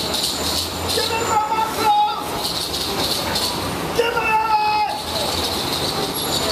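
A high voice holding long notes that bend slightly, heard twice about three seconds apart, over steady street noise with a low traffic rumble.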